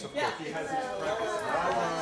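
Indistinct chatter of several people talking in a room, low voices with no clear words.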